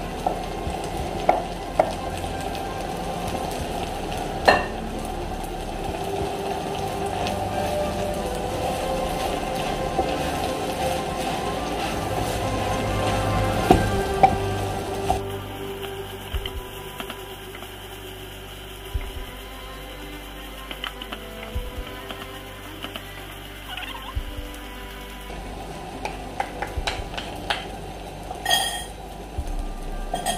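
Wooden spatula stirring rice, chicken and grated beetroot in a frying pan on the heat: sizzling and scraping, with a few sharp knocks of the spatula against the pan. It gets quieter about halfway through.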